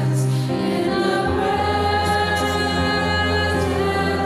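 A small group of women singing a gospel hymn in harmony over instrumental accompaniment, with long held notes.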